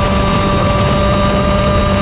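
125cc KZ shifter kart's two-stroke engine running at high revs under way, its pitch held nearly steady.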